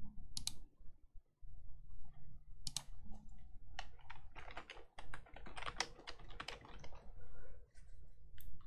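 Typing on a computer keyboard: a few scattered key clicks, then a quick dense run of keystrokes from about halfway through.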